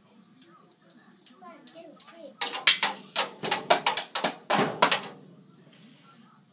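A toddler bangs on a child's toy drum kit with sticks. A few scattered hits come first, then a fast, loud flurry of strikes for about three seconds, which stops abruptly about five seconds in.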